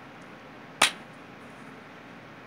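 A single sharp plastic snap a little under a second in: a white DVD keep case being pulled open, its clasp letting go.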